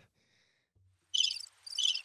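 Recorded cricket-chirping sound effect played from a soundboard, two short bursts of high chirps starting about a second in: the "crickets" gag that marks a bad joke.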